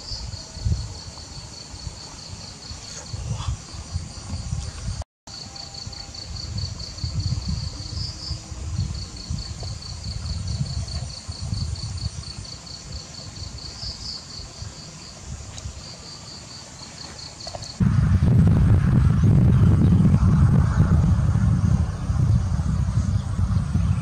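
An insect chirping in a rapid, even pulse of several chirps a second, over a low, uneven rumble. About eighteen seconds in the chirping stops and a much louder low rumble takes over.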